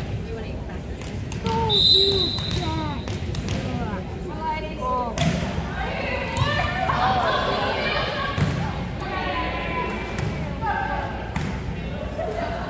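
Indoor volleyball rally: a referee's whistle blows once, briefly, about two seconds in, then the ball is struck with thumps. Spectators' voices and shouts rise in the middle of the rally.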